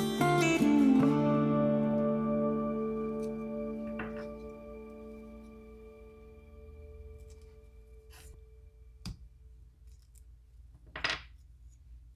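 Acoustic guitar background music ending on a strummed chord that rings out and fades away over several seconds. After it, a few faint clicks and a short scrape near the end from small cut-out wooden pieces being handled and fitted together.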